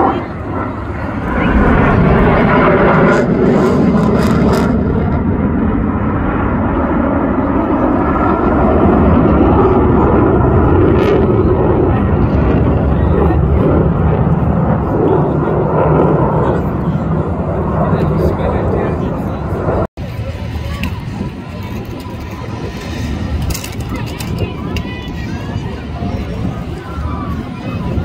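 Jet fighter's engines roaring steadily as it flies a display overhead, heard for about the first twenty seconds. Then a sudden cut to a much quieter stretch of outdoor noise with voices.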